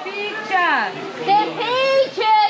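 A group of people's voices, several talking and calling out over one another in lively, overlapping chatter, with one high voice sweeping downward about half a second in.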